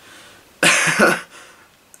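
A man's short breathy vocal burst in two quick pulses about a second in, like a cough or a stifled laugh.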